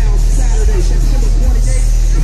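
A loud, steady low rumble with music and people's voices faintly over it.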